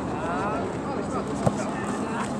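Open-air ambience of an amateur football match: faint distant shouting of players over a steady low hum, with one short sharp knock about one and a half seconds in.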